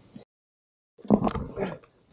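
A person groaning with effort, starting about a second in after a dead gap, mixed with short knocks and rustles of riding gear.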